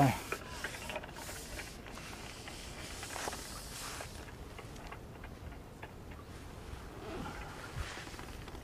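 Faint rustles and light ticks of a carbon fishing pole being handled and pushed out, over a steady low hiss of outdoor background. The ticks are a little busier in the first half.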